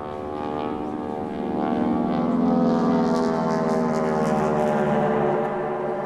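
Droning propeller-aircraft engine sound, swelling to its loudest about halfway through and then easing off, played as the opening of the performance's soundtrack.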